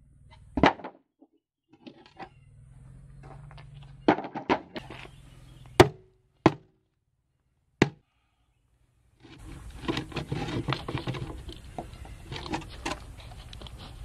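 Small sledgehammer striking plywood concrete-form boards to knock them loose from a cast concrete pit: about six separate sharp knocks a second or two apart. After about nine seconds comes a stretch of rattling and scraping with many small knocks as the boards are worked free.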